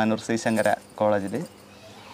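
A person talking, breaking off about a second and a half in.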